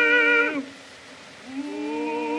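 1907 Victor acoustic recording of a tenor–baritone opera duet: held notes with vibrato break off with a downward slide about half a second in, leaving about a second of record surface hiss. A new held note then rises into place near the end.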